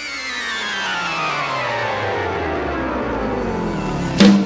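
Sustained electric-guitar tone sliding steadily down in pitch for several seconds, swelling in level over the first second or so and then holding.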